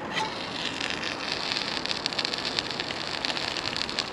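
Sausages and batter sizzling in hot oil in a small aluminium camping pot on a canister gas stove: a steady hiss full of rapid little pops and crackles.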